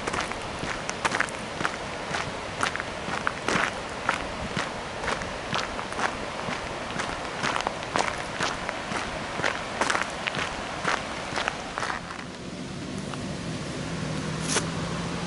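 Footsteps on a gravel path, a walker's steady pace of about two steps a second, stopping about two seconds before the end.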